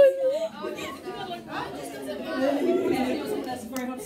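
Chatter: girls' voices talking over one another, with no clear words.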